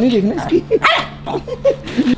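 Shih Tzu barking in play, a string of short, quick barks.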